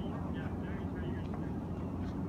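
Steady low rumble of outdoor background noise, with faint voices in the distance and no ball strikes.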